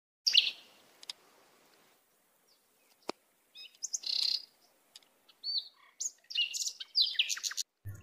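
Birds chirping: a scattered series of short, high chirps and whistles with brief silences between them, coming thicker and faster over the last two seconds.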